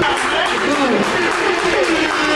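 Crowd of spectators talking and calling out over one another, several voices overlapping with no single clear speaker.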